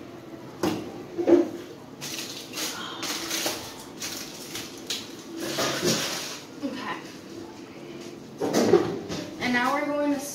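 Quiet, indistinct voices with light clatter of dishes, as cookies are set out for baking.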